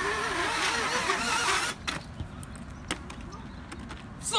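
Quadcopter drone inside a Thor's-hammer shell, its propellers whirring with a pitch that wavers up and down as the throttle changes, then cutting off suddenly a little under two seconds in. A few faint clicks follow.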